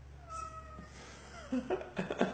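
Domestic cat meowing once, a single short call.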